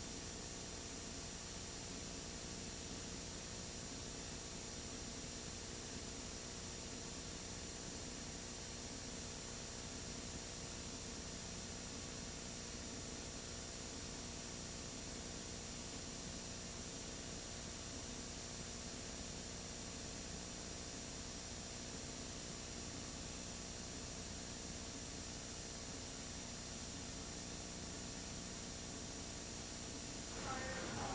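Steady hiss with a faint electrical hum and nothing else: the recorded broadcast's sound is missing while its picture runs on, leaving only the tape and line noise.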